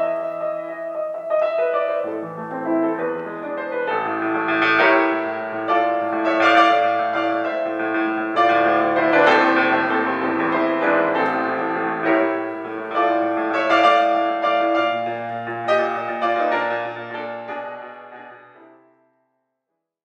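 Restored 1920s Baldwin Model D nine-foot concert grand piano being played: an unhurried passage of ringing chords. It fades away to silence near the end.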